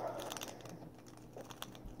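Metal lock pick being raked back and forth across the pin tumblers of a padlock: faint, rapid, irregular light clicks and scratches.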